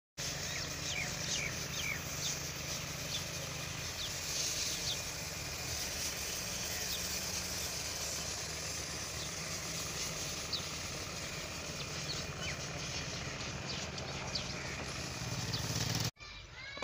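Rural outdoor ambience: small birds chirping briefly now and then over a steady low engine hum.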